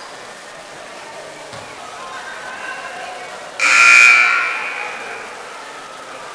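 Gym scoreboard buzzer sounding once, a blaring two-tone blast that starts suddenly about three and a half seconds in and lasts about a second before dying away in the hall's echo. Crowd chatter goes on underneath.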